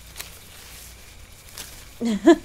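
Sound-effect footsteps rustling through jungle undergrowth, faint, with two sharper crunches, one just after the start and one near the end.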